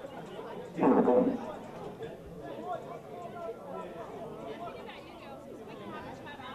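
Indistinct chatter of spectators' voices throughout, with one loud voice calling out about a second in.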